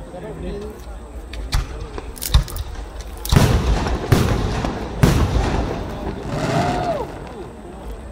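Aerial firework shells bursting: a few sharp bangs in the first couple of seconds, then three heavy booms a little under a second apart starting about three seconds in, followed by a long noisy rush of crackle that dies away about seven seconds in.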